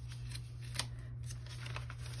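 Paper planner pages, including a vellum overlay sheet, being turned by hand: a soft papery rustle with a few light ticks, the clearest under a second in.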